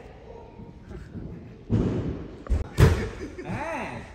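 Dull thuds of a body landing on padded gymnastics mats: three impacts about two seconds in, the last the loudest.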